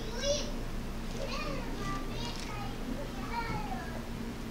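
Faint children's voices: about five short, high-pitched calls and shouts, over a steady low hum.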